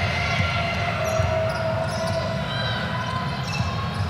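Basketball dribbled on a hardwood court during play, a run of short knocks over the steady background noise of an indoor arena.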